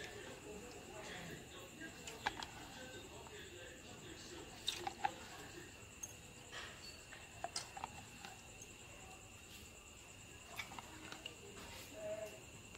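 Quiet kitchen sounds while batter is poured into the cups of a stainless-steel steamer tray: a handful of soft, scattered clicks and taps over a steady, faint high hum.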